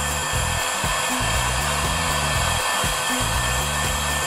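Electric heat gun running steadily, its fan blowing hot air over freshly spray-painted polycarbonate to dry the paint, kept moving so the paint does not ripple or burn. Background music plays underneath.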